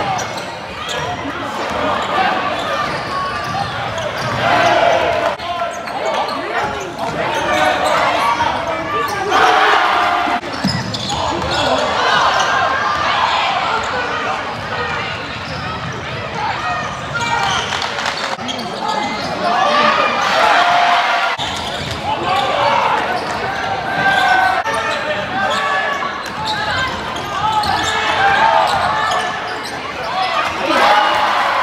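Basketball arena game sound: many crowd voices talking and calling out, with a basketball bouncing on the hardwood court, echoing around the hall.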